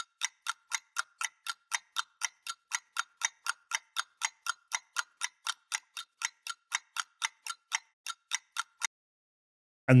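Ticking clock sound effect, an even tick about four times a second, stopping about a second before the end.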